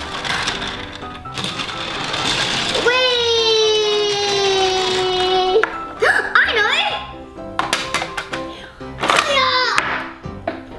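A plastic toy vehicle rolls along a plastic track with a rising rush of noise. Then a child lets out one long drawn-out 'wheee' that sinks slightly in pitch, followed by short bits of child chatter.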